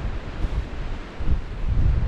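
Wind buffeting the microphone in uneven gusts, over a steady hiss of surf breaking on the rocks below.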